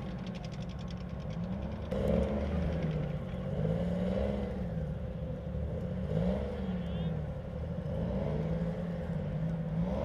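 Diesel engine of an M113-type tracked armoured personnel carrier running and revving up and down several times as the vehicle creeps forward at low speed.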